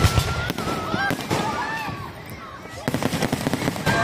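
Aerial fireworks going off in rapid volleys of bangs and crackles, thickest at the start and again about three seconds in, with a brief lull between.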